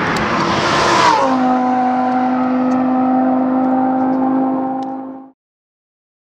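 Lamborghini Huracán's V10 engine flaring up with a falling rev, then settling into a steady idle. The idle cuts off suddenly near the end.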